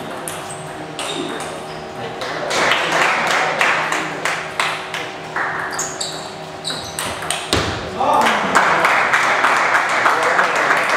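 Table tennis rally: the ball clicks sharply off the bats and the table in quick, irregular exchanges in a large hall. About eight seconds in, as the point ends, spectators' voices rise over the clicks.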